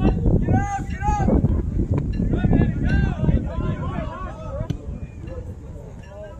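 Several people shouting and calling out across a soccer field, with two loud calls about a second in and then overlapping voices, over a low rumble of wind on the microphone. The shouting dies down near the end.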